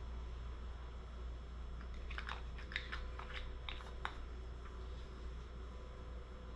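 Handling of a small plastic cosmetics pot and its lid: a quick run of about six or seven small clicks and crinkles about two seconds in, lasting around two seconds, over a steady low hum.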